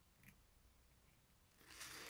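Near silence: room tone, with a faint short tick about a quarter second in and a faint soft rustle near the end.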